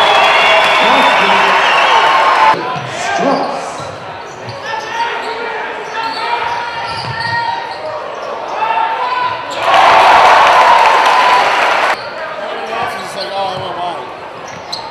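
Basketball game in a gym: loud crowd noise at the start, cutting off abruptly, then a basketball being dribbled with players' and spectators' voices, and another loud surge of crowd noise about ten seconds in that stops suddenly.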